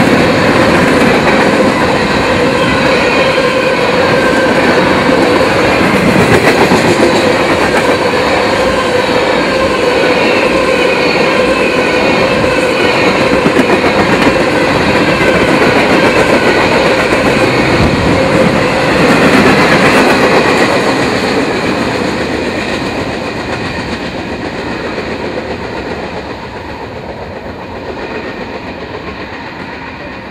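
Freight train's hopper and tank cars rolling past close by, steel wheels on the rails with a steady tone running through the noise. It stays loud for about twenty seconds, then fades as the end of the train pulls away.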